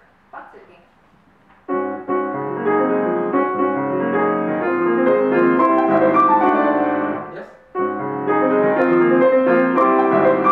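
Grand piano played: a passage of full, sustained chords starting about two seconds in, breaking off briefly near the eight-second mark, then picking up again.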